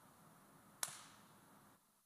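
Near silence with a single sharp click a little under a second in, after which the sound cuts off to dead silence.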